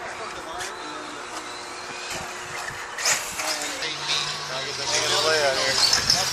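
Background voices of people talking, with noise from radio-controlled buggies driving on the track; a hissy rush grows louder from about halfway through.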